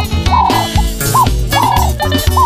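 Instrumental passage of an African guitar-band song, with no singing: a lead guitar repeats a short phrase of bent, rising-and-falling notes over bass guitar and drums.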